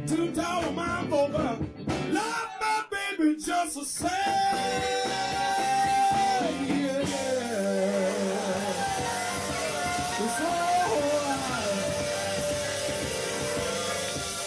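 Live blues-rock band with electric guitar, bass and drums, playing choppy stop-time hits for the first few seconds. From about four seconds in, a long held lead line bends in pitch over the full band.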